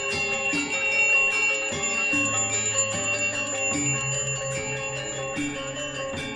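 Balinese gamelan playing: bronze metallophones struck in a fast, even pulse over sustained ringing tones, with a lower melody moving underneath.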